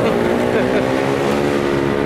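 Motorcycle engine running under way, its steady note climbing slightly as it picks up speed, over wind and road noise.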